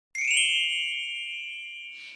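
An intro chime sound effect: a bright ding struck once at the very start, its several high tones ringing on and slowly fading.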